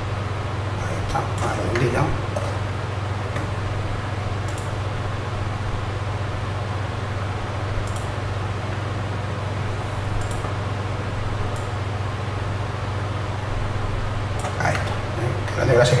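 A steady low hum with a few faint, isolated clicks, and low murmured speech about 1–2 s in and again near the end.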